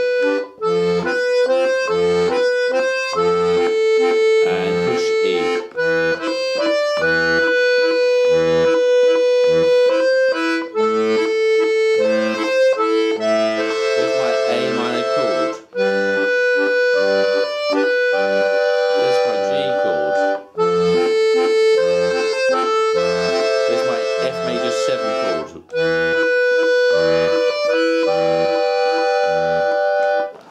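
Two-row diatonic button accordion (melodeon) playing a slow waltz tune: a sustained right-hand melody over a regular pulse of left-hand bass notes and chords, with short breaks every few seconds.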